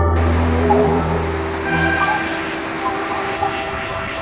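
Background music of held tones, with a rushing, hiss-like noise laid over it that stops suddenly near the end.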